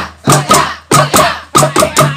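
Improvised percussion from a sahur patrol: a plastic jerrycan struck as a drum with a wooden stick, with wooden clappers, beating a fast, steady rhythm of about three to four strikes a second, each with a low boom. It is the street drumming that wakes residents for the pre-dawn Ramadan meal.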